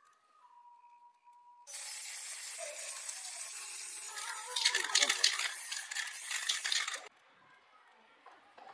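Aerosol spray-paint can hissing in a long spray onto metal scooter fork tubes, starting about two seconds in and cutting off suddenly about five seconds later, sputtering unevenly in its second half.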